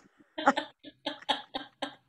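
A woman laughing in a run of short, breathy bursts, about three or four a second.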